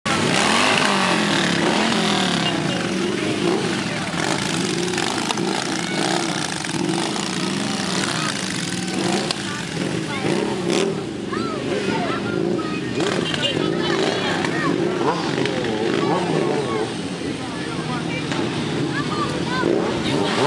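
A procession of motorcycles riding slowly past, a touring trike, sport bikes and cruisers, their engines running loud with pitch rising and falling as riders rev, under a constant mix of people's voices.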